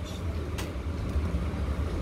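Steady low background rumble, with a brief rustle of cloth being handled about half a second in.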